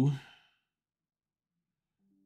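A man's drawn-out word trailing off in the first half-second, then silence.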